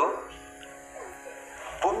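A steady, buzzing musical drone, one held note with many overtones, under a pause in a man's speech; his voice trails off at the start and comes back near the end.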